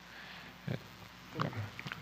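Quiet room tone through a conference microphone, broken by a short hesitant "é" about a second in and a second brief grunt-like vocal sound, with a couple of faint clicks near the end.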